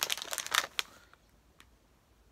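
Plastic jelly bean bag crinkling as it is handled, a short run of crackles in the first second, then quiet.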